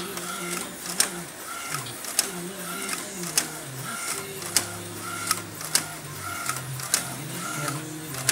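DTF printer printing: the print-head carriage shuttles back and forth across the film, with a short motor whine on each pass about every 0.7 s and a sharp click roughly once a second, over a steady low machine hum.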